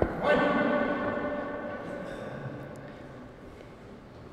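A sharp knock, then a steady pitched hum that slowly fades away over about three and a half seconds.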